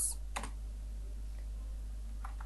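A couple of keystrokes on a computer keyboard in the first half-second, as a word is typed, over a faint steady low hum.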